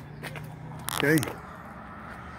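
A steady low mechanical hum, with one short spoken word about a second in.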